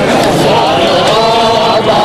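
Men's voices chanting a noha, a Shia lament, with long held notes near the middle.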